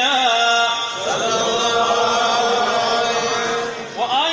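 A man chanting Arabic religious verse: a short rising phrase, then one long held note with a slow wavering melisma that breaks off just before the end.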